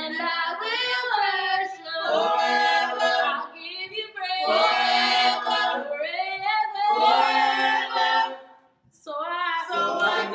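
A small mixed group of male and female voices singing a gospel song a cappella in harmony, in long held phrases with short breaths between them and a brief pause about nine seconds in.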